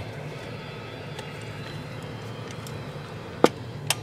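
Low steady background noise, then two sharp clicks near the end, the first much louder: a CB radio microphone's push-to-talk key being pressed ahead of a modulation test.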